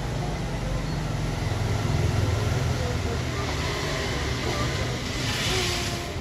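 Steady low rumble of road traffic, swelling about two seconds in, with a short rising hiss near the end.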